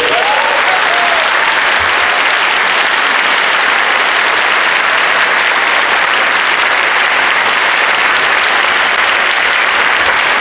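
Concert hall audience applauding steadily, right after the orchestra's final chord.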